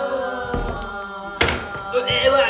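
A group of young men's held, chanted "yah!" dies away, then a low thud about half a second in and a sharp knock about a second and a half in, the loudest moment.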